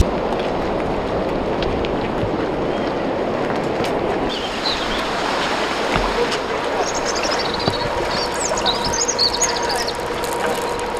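Outdoor ambience by a river: a steady rush of noise under faint background voices, with small birds chirping a few times from about four seconds in. A faint steady hum joins near the end.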